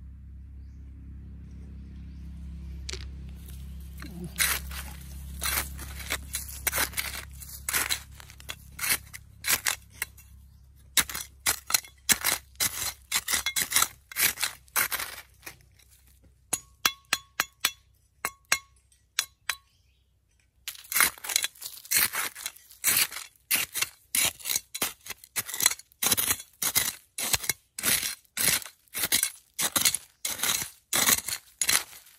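Small metal hand trowel digging into dry, stony soil: a long run of sharp strikes and scrapes of the blade into the ground, with a short lull in the middle and a fast, steady run of strokes in the second half.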